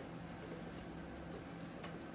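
Quiet kitchen room tone with a faint steady hum, and one faint click near the end.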